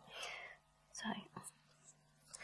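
Only speech: a woman saying a couple of words quietly, between short pauses.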